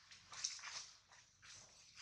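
Faint rustling and crackling of dry leaf litter as macaques shift and a baby moves over it, in a few short rustles, the loudest about half a second in.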